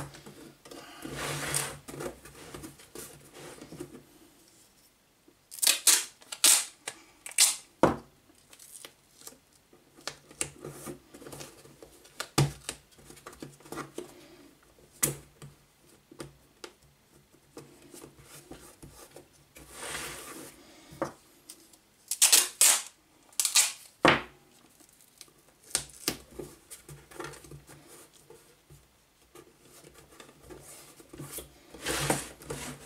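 Gaffer tape being pulled off the roll and torn off in short rips, several times over, to tape down the lid of a small wooden box. Now and then a sharp knock as the box is handled on the bench.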